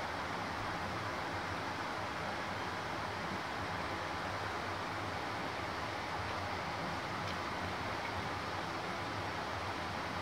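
A steady, even hiss of background noise, with no distinct sound standing out.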